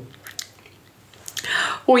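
A pause in a woman's speech filled with faint mouth sounds: a few small clicks, then a brief breathy noise, and her voice starts again near the end.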